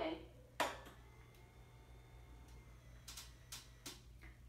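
Faint steady whir of a hospital bed's electric actuator motor as it raises the knee section, with a sharp click about half a second in and a few light clicks near the end.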